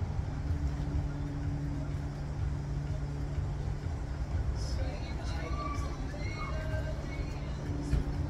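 A steady low mechanical hum with a low rumble beneath it, and a few faint short tones about five to seven seconds in.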